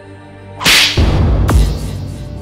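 Trailer transition sound effect: a loud whoosh about half a second in, then a sharp whip-like crack near the middle, with a heavy low rumble under and after it.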